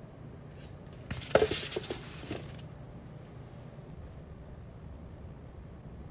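Brief handling noise, a rustle with a few sharp knocks about a second in, over a steady low room hum.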